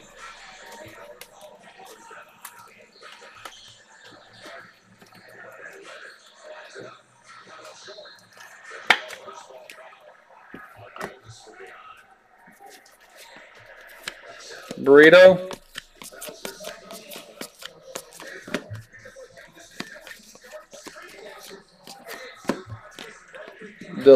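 Trading cards being handled by hand: light clicks and slaps of card edges as cards are picked up, squared and flipped through, with a sharper knock about nine seconds in. Faint background music underneath, and a brief voice about halfway through.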